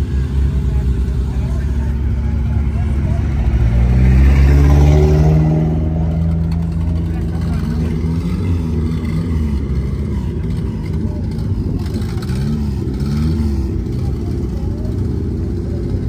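A car engine revving up, rising in pitch and loudest about four to five seconds in, over a steady low engine rumble.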